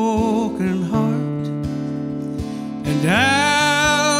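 A man singing a slow country ballad to acoustic guitar accompaniment. A held sung note fades about a second in, the guitar is picked alone for a couple of seconds, and the voice comes back near the end on a long note that slides up.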